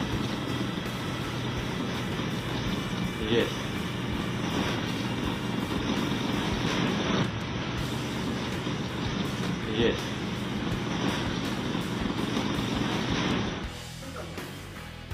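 Ship's wheelhouse audio from a voyage data recorder, muffled and thin: a steady machinery hum and rumble, with two short shouted replies of 'Yes' (Russian 'Yest', aye) from the crew, about three and ten seconds in. It cuts off near the end.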